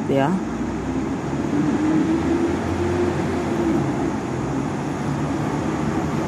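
Steady road traffic noise from cars passing on a multi-lane road, with a low engine rumble over the first few seconds.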